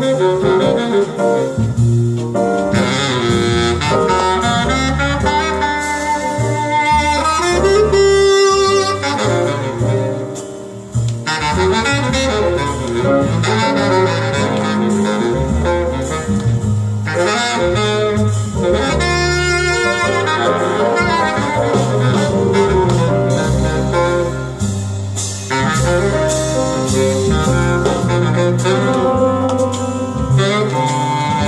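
Live small-group jazz recording: a saxophone plays the melody over a walking double bass line, with a brief softer moment about ten seconds in.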